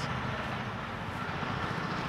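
Steady low outdoor background rumble with no distinct events, the kind of hum that distant traffic makes.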